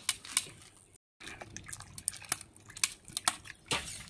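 Metal slotted spoon scooping blanched loaches out of hot water in a wok: water dripping and splashing, with sharp clicks of the spoon against the pan. The sound cuts out briefly about a second in.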